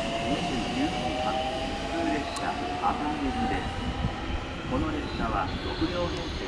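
A 211 series and 313 series electric commuter train pulling out of a station and gathering speed. The traction motors give a whine that climbs slowly in pitch for the first few seconds, over a steady rumble of wheels on rail.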